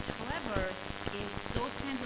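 Dense crackling, hissing noise in the recording, like static from a poor audio feed, with faint, indistinct speech beneath it.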